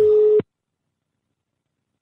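A single steady telephone tone on the line after the call is cut off, stopping abruptly about half a second in, followed by dead silence.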